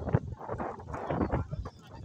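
Indistinct voices of people talking, mixed with irregular knocks.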